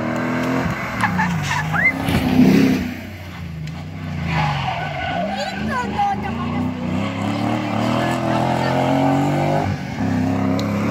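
Rally car engine revving hard, its pitch climbing and dropping again and again as it is driven sideways through the tyre-marked course, with tyre squeal over it.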